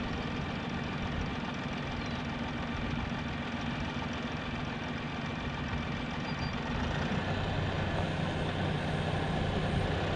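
An engine idling steadily, its note shifting lower and getting a little louder about seven seconds in.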